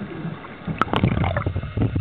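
Underwater recording: a low, churning water rumble with many scattered sharp clicks and crackles, growing louder less than a second in.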